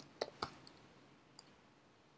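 Computer keyboard keystrokes: a quick run of three or four clicks in the first half second, then one faint click a little later.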